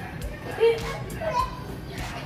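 A child's voice mixed with a film's soundtrack, music and dialogue, playing from a monitor.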